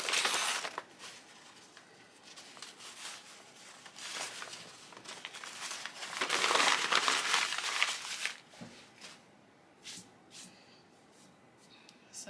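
Tear-away embroidery stabilizer being torn and peeled off the back of machine stitching in several crinkling, rustling pulls, the longest and loudest about six to eight seconds in. A few light clicks follow near the end.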